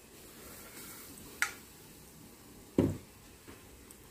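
Batter-coated paan (betel) leaf deep-frying in hot oil, a steady sizzling hiss. A sharp click about a second and a half in and a louder knock near three seconds.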